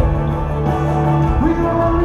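Live band music heard from among the audience in a large arena, loud and steady: held chords over a strong low bass note.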